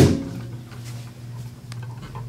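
A heavy glass measuring cup set down on a table with a sharp thump, followed by a few faint clinks of a fork in the cup. A steady low hum runs underneath.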